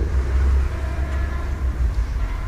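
A steady low rumble, with a faint thin hum rising briefly above it in the middle.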